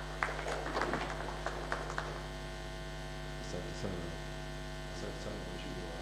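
Steady electrical mains hum from a microphone and sound system, with a flurry of small clicks and rustles in the first two seconds and faint murmured voices later.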